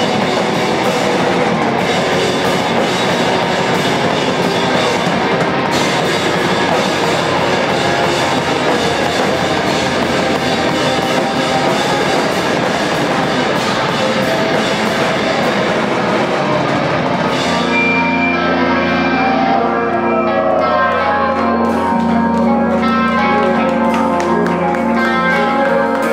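Rock band playing live: electric guitars, bass and drum kit together at full volume. About 17 seconds in, the drums and dense guitar wash drop away, leaving sustained guitar and bass notes.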